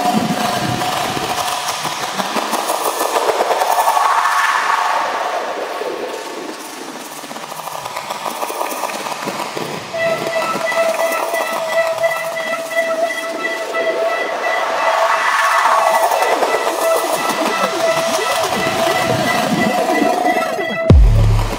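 Bass-less breakdown in a drum and bass mix: a held whistle-like tone with overtones over a dense clicking texture, with swelling sweeps about four and fifteen seconds in.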